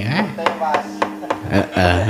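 The wayang kulit dalang's percussion, the cempala knocker on the puppet chest and the keprak plates, struck in a quick, irregular run of sharp knocks, about three a second, accenting the puppet's movement.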